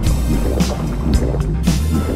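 Cartoon background music with a beat about twice a second, over underwater bubbling and churning water sound effects.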